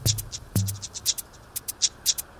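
Electronic background music: a quick, even ticking of hi-hat-like percussion over deep kick-drum thumps, two of them in the first half-second or so.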